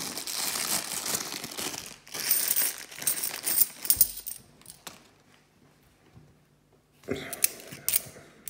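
Sealed plastic bag of 50p coins crinkling as it is handled and torn open, with sharp clicks of the coins shifting inside. It goes quiet for about two seconds past the middle, then coins click together again near the end.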